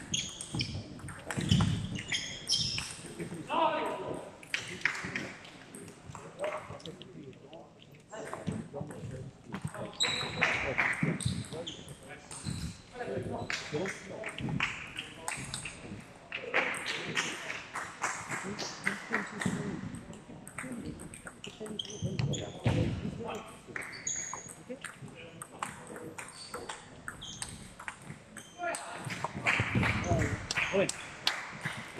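Table tennis ball clicking back and forth off the rubber bats and the table in short rallies, with people talking in the hall around it.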